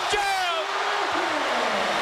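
A broadcast commentator's single long, drawn-out call that falls slowly in pitch, over the steady noise of the arena crowd.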